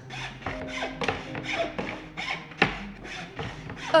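A small hand saw cutting through a wooden board in quick, even back-and-forth strokes, about three a second.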